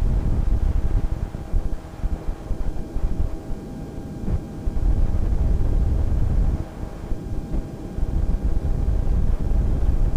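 1952 Bell 47G (H-13 Sioux) helicopter's piston engine and two-blade main rotor running at hover power, heard from the cockpit. Wind buffets the microphone in uneven low rumbles.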